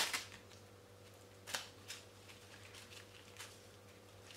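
A plastic stencil being peeled up off a card front coated in wet embossing paste: a few faint, scattered crackles and ticks, the clearest about a second and a half in.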